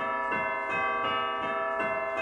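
Music of chiming bells. A new bell note is struck about three times a second, and each keeps ringing under the next, so the notes pile up into a sustained shimmer.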